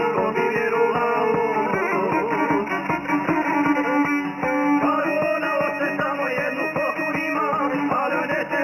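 Instrumental passage of Serbian folk music: a violin and a plucked string instrument play a lively tune over a steady, even beat.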